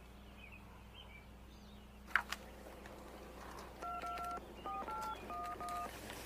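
Phone keypad being dialed: five touch-tone beeps, each a pair of tones, the first held longer than the rest, starting a little past the middle. A single sharp click comes about two seconds in, over faint bird chirps in the first second and a half.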